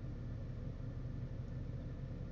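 Steady low vehicle rumble with a faint hiss over it, even throughout with no distinct events.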